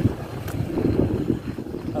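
Wind buffeting the phone's microphone over the low rolling rumble of inline skate wheels on the path.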